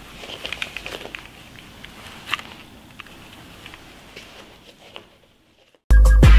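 Quiet rustling of clothing and small handling clicks and taps from two people moving close together, with one sharper click a little over two seconds in. It dies away near the end.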